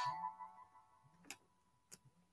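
An electronic chime tone with a slight warble fading out, then two short sharp clicks about half a second apart.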